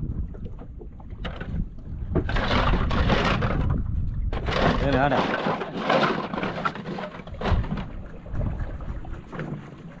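Men's voices talking and calling out on a small fishing boat, with wind rumbling on the microphone.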